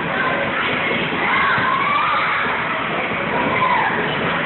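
Many children shouting and squealing together over a steady din of crowd noise.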